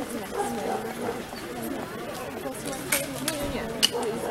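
Background chatter of onlookers talking, no words clear, with two sharp clicks in the last second or so.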